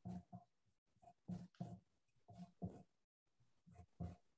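Faint, irregular short strokes of a Surform rasp shaving leather-hard clay to tighten a pot's profile, about eight scrapes over the few seconds.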